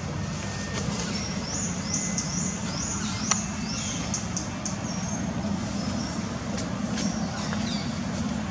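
Outdoor ambience: a steady low rumble like distant engine traffic, with a run of high, rising chirps repeating a few times a second from about one and a half to five seconds in. There is a sharp click about three seconds in.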